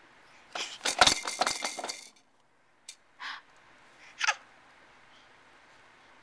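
A rapid run of hard clicks and clinks, lasting about a second and a half: the Exersaucer's plastic toys being rattled and knocked.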